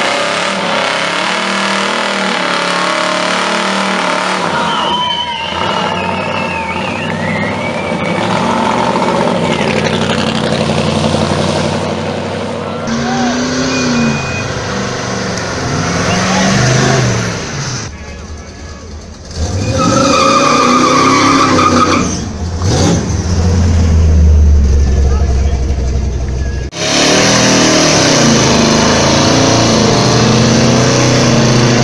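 Big American cars revving hard one after another for burnouts, engine pitch rising and falling in repeated sweeps over a noisy haze of spinning tyres, with a deep rumble in the second half. Crowd voices mix in.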